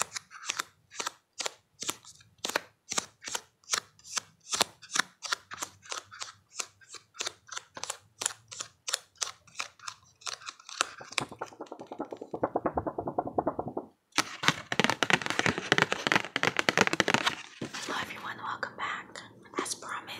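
Fingertips tapping on a cardboard card box, crisp taps about three a second. About halfway through the taps give way to fast runs of clicks and flutter as the tabbed cards are flicked through, broken off suddenly for a moment and then resumed.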